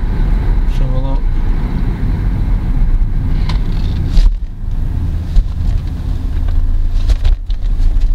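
Driving noise inside a moving car's cabin: a steady low rumble of tyres and engine, dipping briefly a little after four seconds in.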